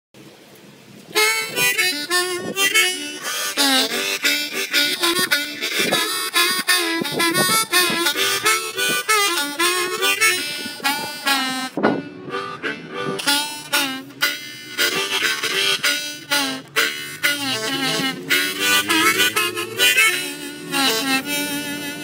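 Hohner harmonica played solo blues, starting about a second in: a run of wavering, bent notes and rhythmic chords.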